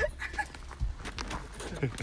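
Indistinct voices talking, over a steady low rumble.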